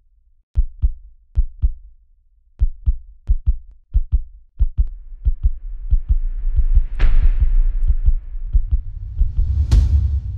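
Heartbeat sound effect for an animated logo intro: paired low thumps that come faster in the second half, over a low rumble that swells from about halfway. A whoosh comes about three seconds before the end and another near the end.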